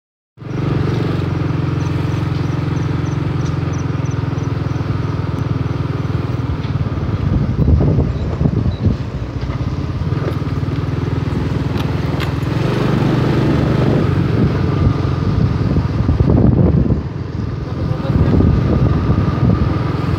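A road vehicle's engine running at a steady pitch while on the move, over a steady rush of road and wind noise. Wind buffets the microphone in two gusts.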